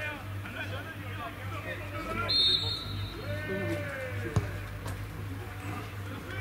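A referee's whistle blows once, short and shrill, about two seconds in, signalling the free kick, and about two seconds later the ball is struck with a single sharp thud, the loudest sound. Players' shouts and calls run throughout.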